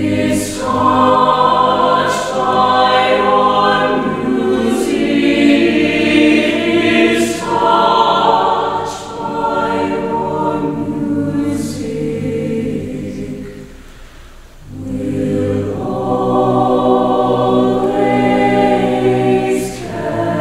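Mixed chamber choir singing held chords in several parts, with sibilant consonants cutting through; the sound fades down around two-thirds of the way in, then the full choir comes back in loudly about a second later.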